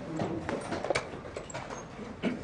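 Several quick, irregular wooden clacks of blitz chess play: pieces set down on the board and the chess clock's buttons pressed.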